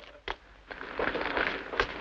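Gasoline spraying from a gas-pump nozzle and splattering on the pavement: a rough, crackly hiss that starts after a short lull, with a sharp knock near the end.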